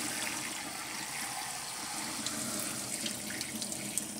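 Kitchen faucet running steadily on its spray setting into a bowl of soaked clover seeds, with the water and seeds being poured out of the bowl into a plastic sprouting tray in a steel sink. The rinse water splashes, with a few faint small ticks.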